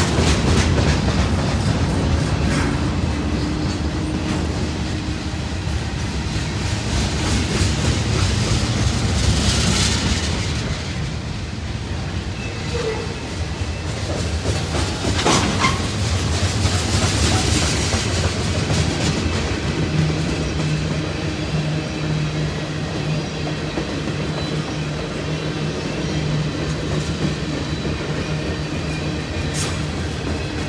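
Freight cars of a long train rolling past: a continuous rumble of steel wheels on rail with clickety-clack over the rail joints. A steady low hum comes in about two-thirds of the way through.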